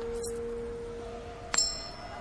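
Sustained musical notes held under the scene. About one and a half seconds in, a coin lands with a sharp metallic clink and a brief high ring.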